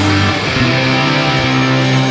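Rock band playing live, electric guitar and bass to the fore: a chord rings out and is held steady from about half a second in, with no vocals.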